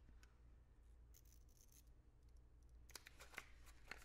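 Near silence: room tone with a faint low hum, and a few faint clicks and rustles of cosmetics packaging being handled, most of them in the second half.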